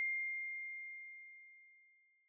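Ringing tail of a single high chime from a logo sting: one pure bell-like tone fading away, gone after about a second and a half.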